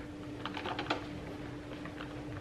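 Light clicks and taps of a plastic blender part being handled and rubbed dry with a cloth towel, several close together about half a second to a second in, over a steady hum.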